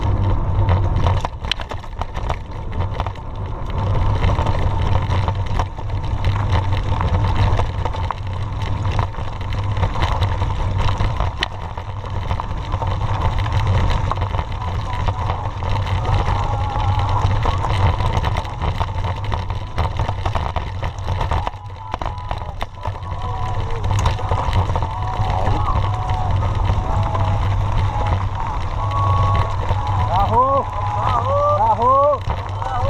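Wind buffeting a bike-mounted camera's microphone on a fast mountain-bike descent over a dirt road, with the constant rumble of the tyres and frequent rattling knocks from the bike over bumps.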